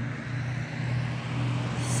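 Street traffic: a car on the road approaching, its noise growing slowly louder.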